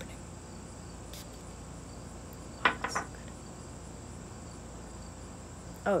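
Insects chirring steadily in one even, high tone. A brief high hiss comes about a second in, and two short pitched vocal sounds about halfway through are the loudest part.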